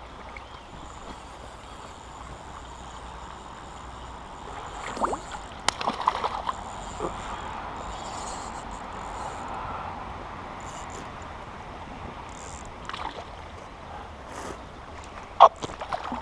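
Water sloshing and splashing as a hooked fish is played at the surface beside a landing net, with a few sharp, irregular splashes about a third of the way in and again near the end.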